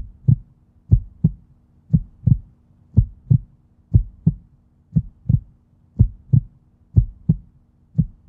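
A heartbeat sound effect: low double thumps, lub-dub, about one beat a second, over a faint steady hum.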